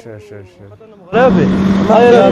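Speech: faint voices during a brief lull in the first second, then loud talking starts again about a second in.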